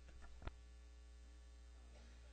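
Faint, steady electrical mains hum, with a single sharp click about half a second in.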